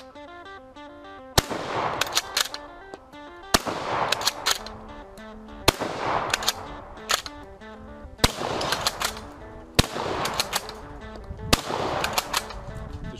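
Six shots from a Gras bolt-action rifle, one roughly every two seconds, each with an echoing tail, over background music.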